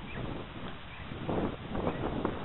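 Coastal wind blowing across the camera microphone: a steady low rumble and hiss, swelling a little in the second half.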